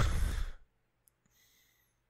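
A man sighing: one short, heavy exhale into a close microphone lasting about half a second, followed by a faint click about a second in.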